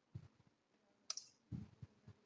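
Faint computer keyboard keystrokes: a few scattered clicks and soft taps as a line of code is typed.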